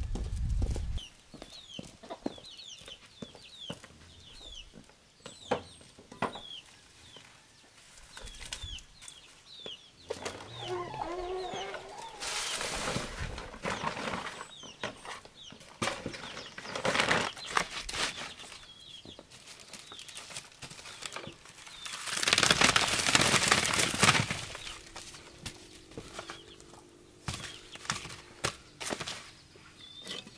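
Chickens clucking around a farmyard, with small birds chirping and scattered footsteps and knocks. A loud rustling clatter lasts about two seconds, a little past three-quarters of the way through.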